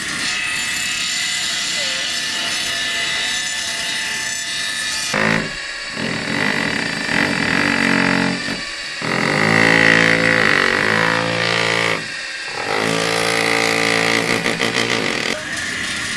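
Cordless drill driving screws into wooden boards, running in several spurts of two to three seconds with short pauses between, its pitch bending as it takes up the load. A steady mechanical hum underlies the first few seconds and returns near the end.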